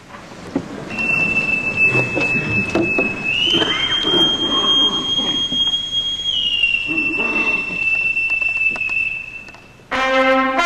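A boatswain's call (bosun's pipe) sounding one long piped call: it starts on a low note about a second in, rises to a higher note, holds it, then drops back to the low note and stops just before the end.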